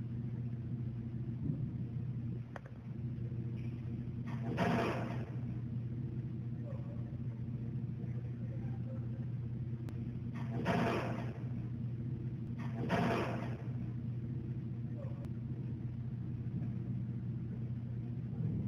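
Steady low electrical hum from a machine in the room, with three brief rustling noises about four and a half, eleven and thirteen seconds in.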